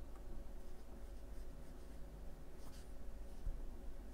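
Faint scratchy brushing of a watercolour paintbrush, picking up paint from a pan palette and then stroking lightly across watercolour paper, over a low steady hum.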